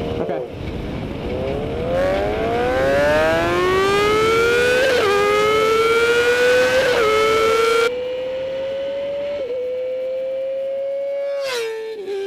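Sport motorcycle engine at full throttle in a flyby, its pitch climbing steadily through the revs with upshifts about five and seven seconds in. About eight seconds in the sound turns suddenly duller and the note holds high and nearly steady, dropping again just before the end.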